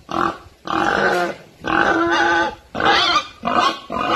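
A pig calling five times in a row, each call up to about a second long.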